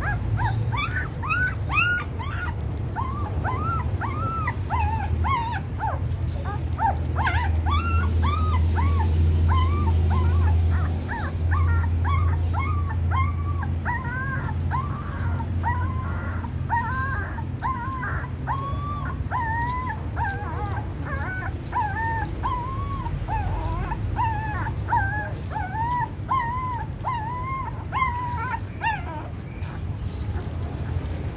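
Newborn puppies squeaking and whimpering while they nurse, many short rising-and-falling squeaks a second, over a low steady hum.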